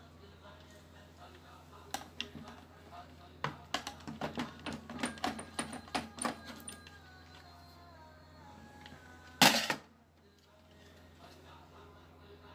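A screwdriver and a TV power-supply circuit board being handled, giving a dense run of sharp clicks and knocks from about two to seven seconds in. About nine and a half seconds in comes one short, loud, noisy burst, the loudest sound. Faint music plays underneath.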